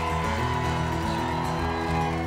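Instrumental band music led by guitar, with no singing.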